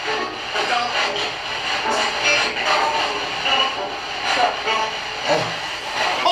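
A steady hiss with faint, broken snatches of voice running through it.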